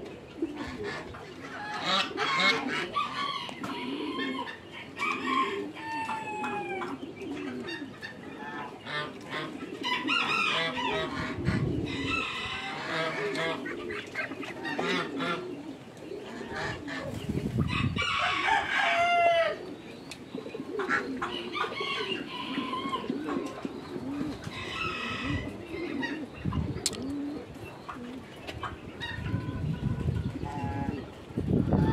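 Farmyard poultry calling on and off, with many short, overlapping calls. The pen holds domestic geese and Muscovy ducks, and there are clucking and crowing-like calls among them. A few low rumbles come in about twelve and eighteen seconds in.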